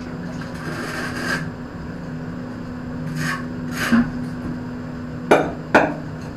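Hand tool scraping over a wet cement mortar bed while laying floor tiles, a few short rasping strokes, then two sharp knocks near the end, over a steady low hum.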